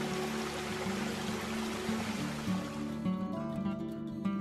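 Running water of a small mountain stream under steady acoustic guitar background music; the water sound cuts off about three seconds in, leaving only the music.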